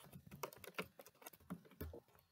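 Computer keyboard typing: a quick, irregular run of faint keystrokes.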